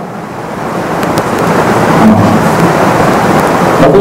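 A steady, loud rushing noise with no speech, growing louder over the first two seconds and then holding level.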